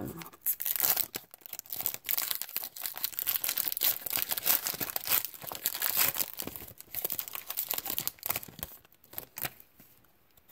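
Plastic wrapper of a Panini Prizm basketball card pack being torn open and crumpled by hand: a dense run of sharp crackles that thins out near the end.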